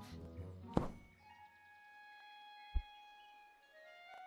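Orchestral film score with held string notes, broken by a sharp thunk about a second in and a short deep thump near three seconds.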